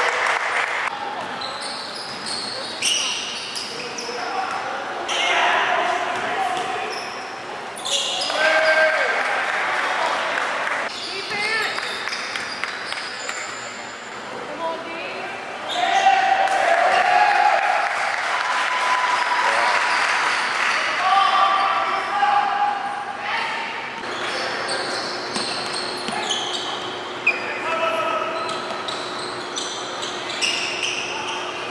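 Live sound of an indoor basketball game in an echoing gym: the ball bouncing on the hardwood floor among repeated sharp knocks, with indistinct players' voices and calls.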